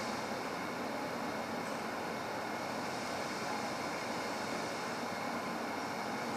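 Steady, even background hiss of room tone, with no distinct sounds; no bell or other strike is heard.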